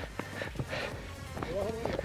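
Faint footsteps of trail runners on a dirt path, a few light scattered steps over a low steady rumble. A brief faint voice comes in near the end.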